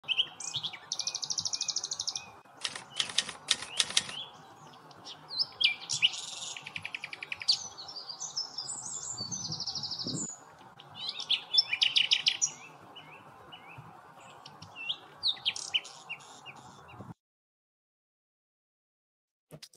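Several birds chirping and singing, with rapid trills and quick repeated notes, over a steady background hiss; it all stops abruptly about 17 seconds in.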